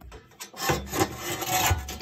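Irregular rubbing and scraping of metal parts close to the microphone, starting about half a second in, as burner parts are handled against the boiler's sheet-metal burner tray.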